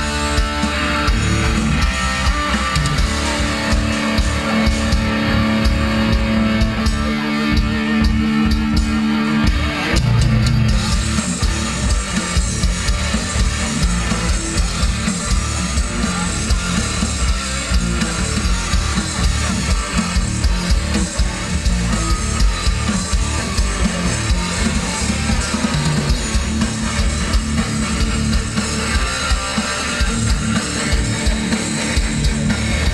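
Live metal band playing: distorted electric guitars, bass and drum kit through the stage PA. Held guitar notes carry the first ten seconds or so, then the full band comes in with a denser, driving section.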